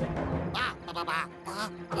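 Cartoon Rabbid characters' voices: about three short, high-pitched gibberish cries with sliding pitch, over background music.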